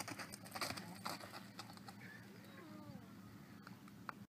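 Faint riding-arena sound: soft hoofbeats of a horse loping on dirt in the first second or so, then a faint gliding animal call near the middle.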